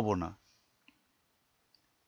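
The last word of a man's voiceover narration, then near silence with a few faint, isolated clicks.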